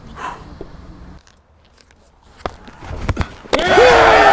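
A couple of sharp knocks, then about three and a half seconds in a sudden loud outburst of many voices shouting and cheering together, greeting a strikeout.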